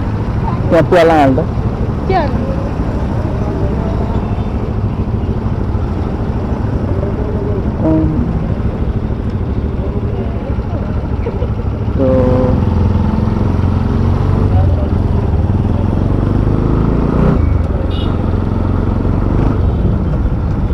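A two-wheeler's engine running at low speed, a steady low rumble that grows louder about twelve seconds in as it pulls away.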